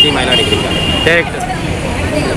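Street traffic noise under men's voices, with a steady high-pitched tone for about the first second.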